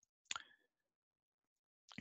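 Near silence: a pause in speech, with one faint, short click about a third of a second in.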